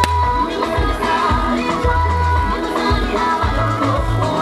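Music playing: a song with a singing voice over held bass notes.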